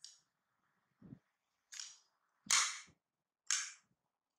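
A kitchen knife cutting through a head of fresh cabbage: a few sharp, crisp cracks as the leaves split, the loudest about two and a half and three and a half seconds in, with a low knock about a second in.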